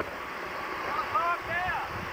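A person's voice, indistinct, heard for about a second in the second half over a steady noisy background.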